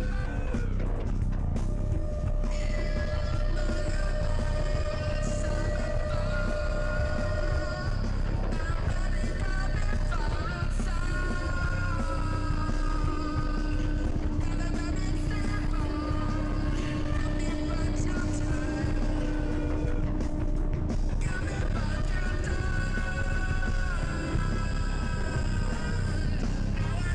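Live improvised rock band playing: long held and sliding notes, typical of an effected cello, over steady bass and drums.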